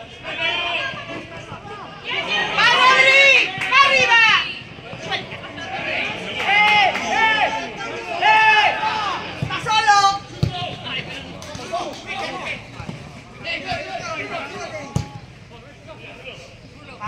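Several voices shouting across a football pitch during play: loud, high-pitched calls in bursts, loudest a few seconds in and again in the middle. A few short thuds are heard, one near the end.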